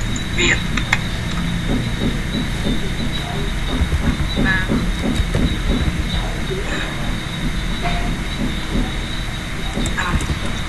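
Computer keyboard typing: scattered short key taps over a steady low rumble with a faint high-pitched whine.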